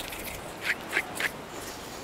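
Fish frying in coconut oil in a clay pot: a steady sizzle with three short pops, about a third of a second apart, near the middle.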